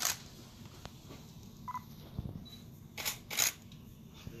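Rustling of a cricket shirt as it is handled and held out to be signed: a short brush at the start and two more close together near the end.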